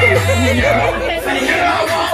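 A group of people talking and calling out over loud music with a deep bass line.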